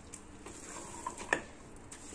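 A wooden spatula stirring thick, cooked urad dal and mutton in an aluminium pressure cooker: faint, soft squelching, with one sharp knock against the pot a little past halfway.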